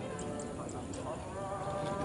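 Distant, indistinct voices of people outdoors, with a few faint light ticks.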